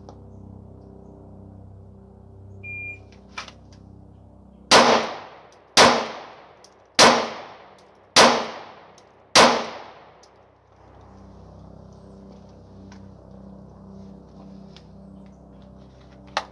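A shot-timer beep, then about two seconds later five pistol shots from a Ruger MAX-9 micro-compact 9mm, evenly spaced about 1.2 seconds apart, each with a short echo.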